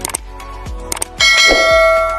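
Background music with a steady beat, with short clicks and then, a little over a second in, a bright bell-like ding that rings on for more than a second: the notification-bell chime of an animated subscribe button.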